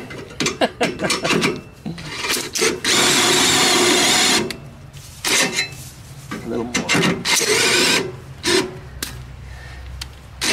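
Cordless drill running in two short bursts: the first lasts about a second and a half, a few seconds in, and the second is shorter, near the end. Clicks and knocks from handling the work come between them.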